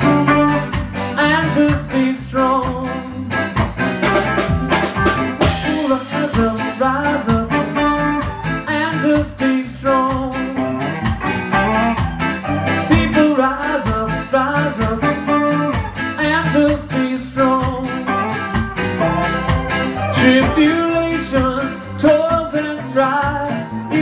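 Live blues band playing: guitar lines over a steady drum beat.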